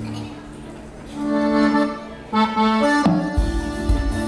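Accordion playing held chords to open a cumbia. The drums and bass come in with a steady beat near the end.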